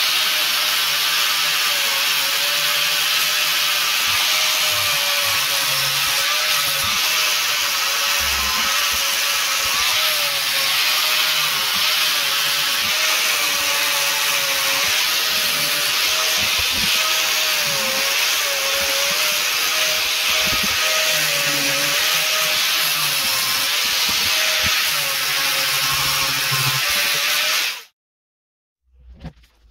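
Electric angle grinder with a sanding disc running steadily while grinding and shaping a wooden block, its motor whine wavering slightly in pitch. The sound cuts off suddenly near the end.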